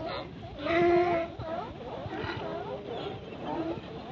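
California sea lions barking: many short calls from a crowd of animals overlap throughout, the loudest a longer, held bark about a second in.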